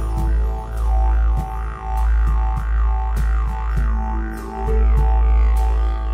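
Intro music led by a didgeridoo: a steady low drone with rhythmic rising-and-falling sweeps, over light percussion ticks and sustained backing tones.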